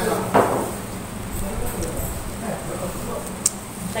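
Background murmur of voices in a small restaurant dining room, with a brief knock about half a second in and a sharp click near the end.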